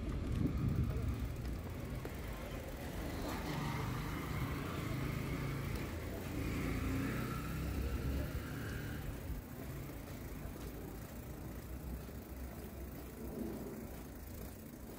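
Outdoor city street ambience with a car driving by and faint voices of people nearby.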